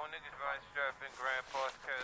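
A voice, thin and without low end, in short indistinct syllables: a recorded vocal take being played back in the studio.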